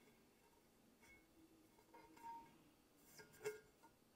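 Near silence: room tone, with a couple of faint, brief soft sounds about two seconds in and again near the end.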